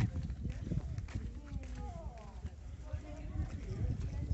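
Faint, distant voices of people talking, under footsteps on a path and a steady low rumble as someone walks along with the camera.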